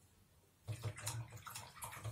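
A paintbrush being swished and rinsed in a jar of water, a splashy burst lasting about a second and a half that starts a little under a second in.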